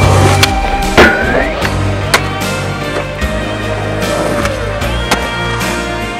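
Skateboard sounds: sharp clacks of the board popping and landing on concrete, the loudest about a second in, over music with sustained tones.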